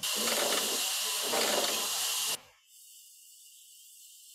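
Sawmill band saw running, a loud hissing noise that cuts off suddenly about two and a half seconds in, leaving only a faint hiss.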